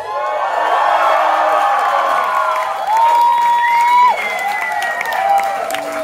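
Club crowd cheering and whooping right after a live rock song ends, with a few long, high shouts rising above the cheering.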